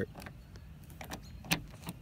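Spare car key worked in the door lock, a few small clicks and one sharp click about one and a half seconds in as the lock operates. It is the test that the spare key works the lock.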